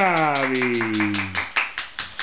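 Quick hand claps, about seven a second, with a person's drawn-out vocal exclamation over them, its pitch falling steadily.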